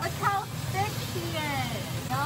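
A voice with long, gliding pitch, like singing or drawn-out vocal sounds, over a steady low hum and hiss.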